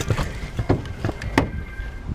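Handling noise close to the microphone: a few sharp knocks and clicks, about four in two seconds, over a low rumble.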